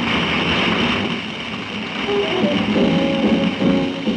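Live small-group jazz from a quartet of tenor saxophone, piano, double bass and drums, playing a fast minor blues. Cymbals fill the first half, and sustained pitched chords come in about two seconds in.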